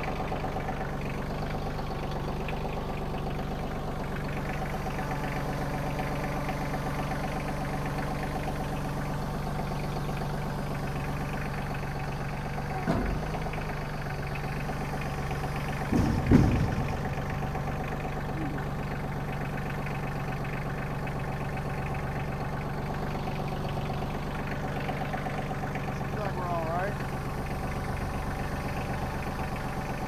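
Kioti CK2610 compact tractor's three-cylinder diesel engine running steadily at low speed as the tractor creeps onto a steel flatbed trailer. Two short clunks come a little before halfway and about halfway, the second the louder, as the tractor goes up onto the trailer.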